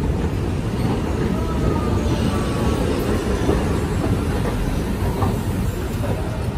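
Subway train in the station: a steady, loud low rumble, with faint thin wheel squeals in the middle.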